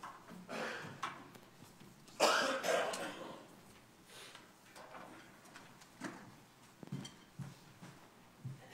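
A person coughing and clearing their throat, the loudest coughs coming as a pair about two seconds in, followed by a few light knocks and rustles.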